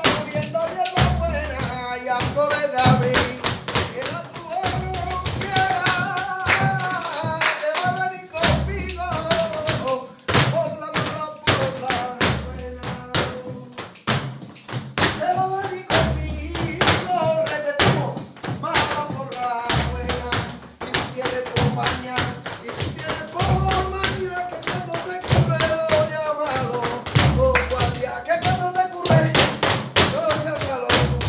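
Flamenco music por bulerías, with a singer's wavering, ornamented voice and a recurring low bass. Sharp strikes run through it in compás: the dancers' feet stamping the pataíta.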